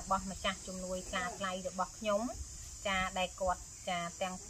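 A woman speaking in Khmer, with a steady high-pitched chirring of insects behind her voice.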